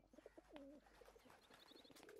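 Faint bird calls: low, wavering coo-like calls in the first second, then a quick run of high chirps about one and a half seconds in.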